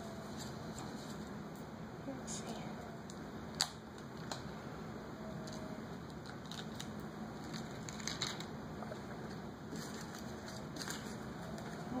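Fingers picking open a small foil packet and the plastic bag inside it: light crinkling and rustling with scattered small clicks.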